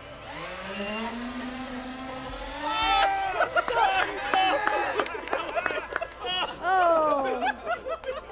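Electric RC plane's four small brushless motors spinning 5-inch props at throttle as it is thrown, giving a buzz whose pitch rises over the first two or three seconds. From about three seconds in, people shouting and whooping take over.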